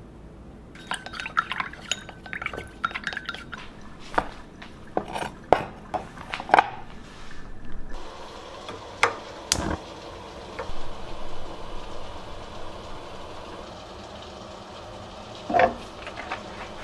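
A metal utensil clinking and scraping against a ceramic bowl as a soy-sauce mixture is stirred, with sharp ringing clinks. About halfway a steady hiss comes in, with a couple of sharp clicks as the stove is turned on.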